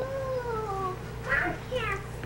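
A high, whining voice gives one long call that slides down in pitch, then a few short, higher falling squeaks.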